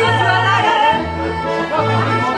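Live accordion and upright double bass playing a French chanson, the bass plucking a line of separate low notes under the accordion's held melody, with a woman singing into a microphone.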